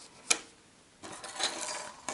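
Small metal pendant pieces clicking as they are set down on a table, followed from about a second in by a light rustle with faint clinks of handled metal charms.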